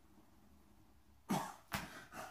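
Quiet room tone, then two short cough-like bursts of breath from a man in quick succession about a second and a half in.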